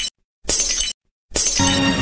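Short bursts of harsh static-like noise switching abruptly on and off, an editing glitch transition effect. The last burst runs into theme music about one and a half seconds in.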